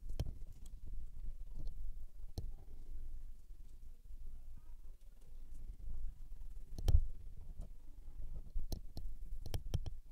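Quiet room with low rumble and scattered sharp clicks and soft knocks, the loudest about seven seconds in, then a quick run of clicks near the end.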